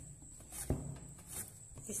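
Peeled raw banana being slid over the slicing blade of a stainless steel grater, a few short scraping strokes about every 0.7 s.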